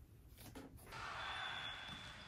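Faint background noise of an indoor volleyball gym, with a thin steady high whine, starting about a second in after near-quiet room tone with a few faint knocks.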